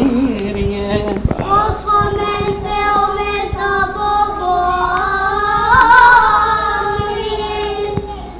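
Coptic Orthodox liturgical chant sung by young voices in long melismatic held notes. A steady lower note runs under a higher line that climbs and swells to its loudest about six seconds in, then breaks off at the end.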